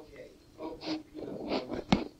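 A man's voice in short, indistinct bursts, with a sharp pop near the end.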